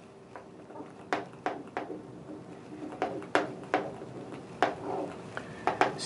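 Marker writing on a whiteboard: about eight short, sharp strokes spread over six seconds as a word is written.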